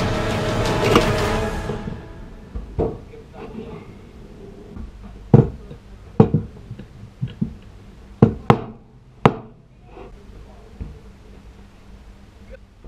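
Background music fades out over the first two seconds. Then a hammer strikes a small wooden block on a workbench about nine times at irregular intervals, some blows coming in quick pairs, driving nails into the wood.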